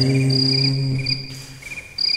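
The last held note of a male menzuma chant fades out over the first second. Behind it, high, evenly repeated cricket-like chirps carry on through the pause.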